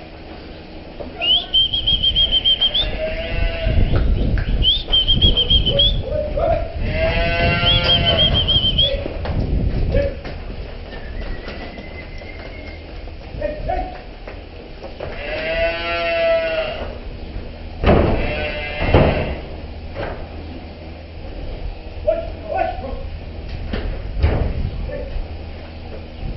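Dairy cows being herded through a milking shed: three short, high, held whistles in the first nine seconds, loud drawn-out calls, and a few sharp knocks of gates or hooves on concrete later on.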